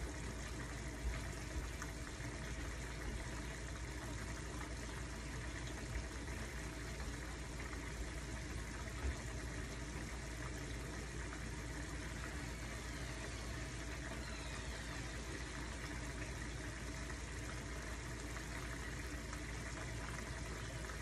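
Yellow curry sauce simmering in a frying pan on a gas burner: a steady bubbling hiss with a few faint pops.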